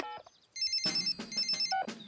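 Cartoon mobile phone: a last keypad beep, then a high electronic ringtone trilling in two short bursts.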